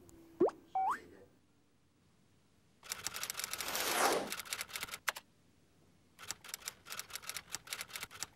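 Edited-in comic sound effects: a quick rising "boing"-like pop and a short stepped blip, then a falling swoosh full of rapid clicks. From about six seconds in comes fast, even, typewriter-like ticking, the ticking of an on-screen number counter.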